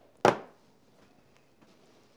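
A single sharp thunk on a hard surface about a quarter of a second in, then quiet room tone with a few faint ticks.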